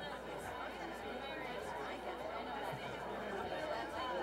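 Indistinct chatter of a seated audience talking among themselves in a large hall, a steady murmur of overlapping voices with no single voice standing out.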